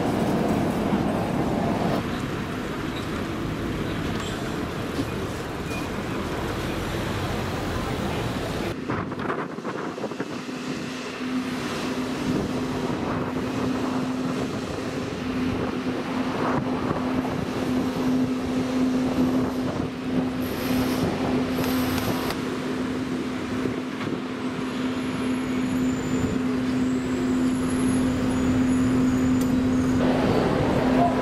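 City street traffic: vehicles passing, with a steady low hum joining in about a third of the way through. The sound changes abruptly a few times.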